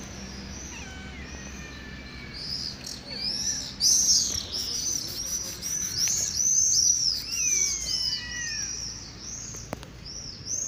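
Small birds chirping: a quick run of short, high chirps that starts about two seconds in and grows busier, with a few thin falling whistles among them.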